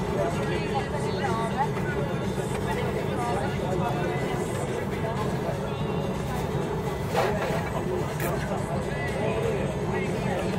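Steady engine and road drone heard inside a moving coach, under the background chatter of other passengers. A brief sharp click stands out about seven seconds in.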